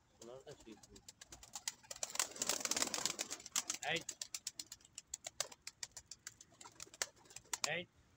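Domestic pigeons' wings clapping and flapping as several birds take off from the ground and land again, with a loud burst of wingbeats about two to three and a half seconds in.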